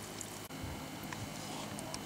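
Faint steady background noise with a few small ticks, dipping sharply for an instant about half a second in where the recording is cut.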